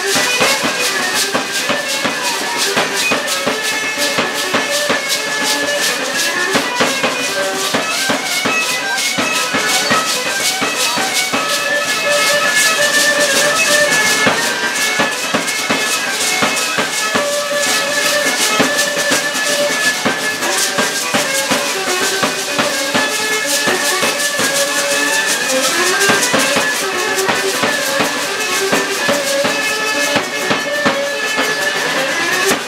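Live music for a Mexican danza de pluma: many dancers' hand rattles shaking together in a fast, steady rhythm over a drum beat, with a held, repeating melody line on top.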